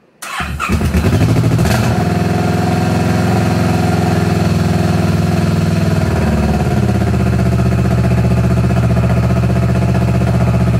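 Kawasaki Vulcan 650S parallel-twin engine started, catching within half a second, then idling steadily; the idle settles a little lower about six and a half seconds in.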